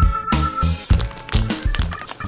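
Background music with a steady beat: drums and guitar.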